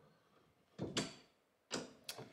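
Three short metallic clicks from a bench vise as its jaw and handle are worked by hand, two close together about a second in and one near the end. The vise is broken: the owner says its screw thread has stripped.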